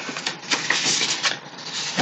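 Scraps of patterned scrapbook paper rustling and crackling as they are handled and shuffled.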